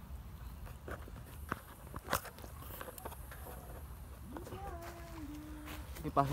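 Quiet background rumble with a few scattered clicks and knocks, then a short hummed or drawn-out voice near the end.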